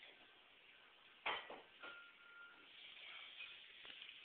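A single sharp knock a little over a second in, then a fainter click and a soft short tone, over low hiss and faint rustling.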